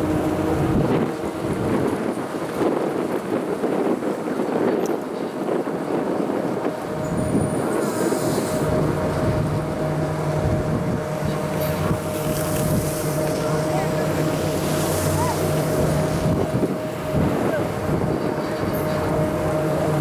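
High-speed detachable quad chairlift's terminal machinery running with a steady whine, with a deeper hum joining in about halfway through. Wind buffets the microphone early on.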